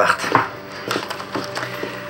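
A few light knocks and clicks from food cans being handled, after a voice finishes a word at the very start.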